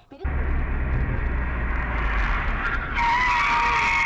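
Dash-cam recording of a car on the move: loud steady road and engine rumble heard from inside the cabin, starting suddenly just after the start. About three seconds in it cuts to another dash-cam recording where a steady high-pitched tone sits over the road noise.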